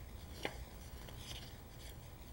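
Quiet room tone with a steady low hum and hiss, and a single sharp click about half a second in.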